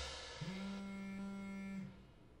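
Background music fading out, then one steady buzz lasting just over a second: a smartphone vibrating on a hard surface for an incoming call.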